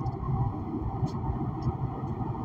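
Low, steady rumbling background noise with a faint click about a second in.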